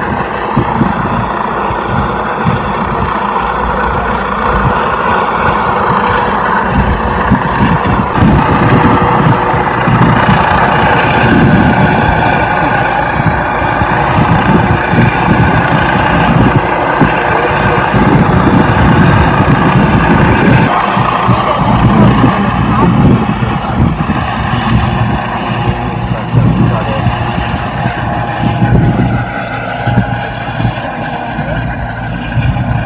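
Rescue helicopter flying low overhead, its rotor and engines running loudly and steadily.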